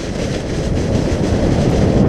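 Plastic sled sliding fast down a snow slope, its hull scraping over lumpy, crusted snow in a loud, continuous rough rumble.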